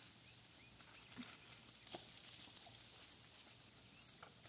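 Near silence: faint outdoor background with a few soft, scattered taps.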